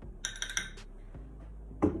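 Metal spoon clinking against dishes, a quick run of light clinks in the first second.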